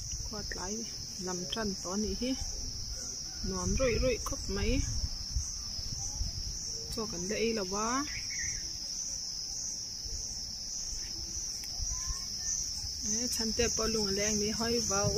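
A steady, high-pitched insect chorus, faintly pulsing, running unbroken throughout.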